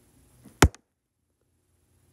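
A single sharp tap, a little over half a second in.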